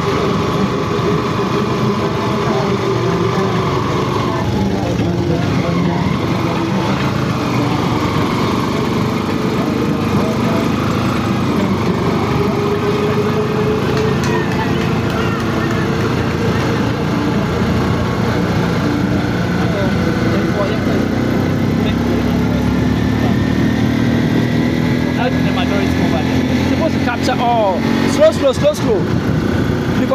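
A motor vehicle engine running with its pitch slowly rising and falling as it changes speed, over indistinct voices. A short cluster of sharper sounds comes near the end.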